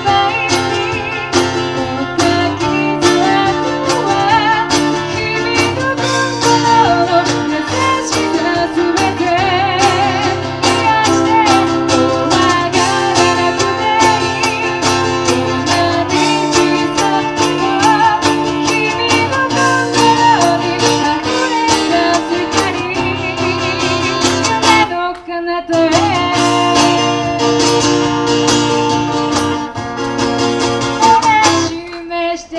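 Live acoustic band: a woman singing over strummed acoustic guitar, electric guitar and cajon. The music drops out briefly about 25 seconds in, then the band comes back in.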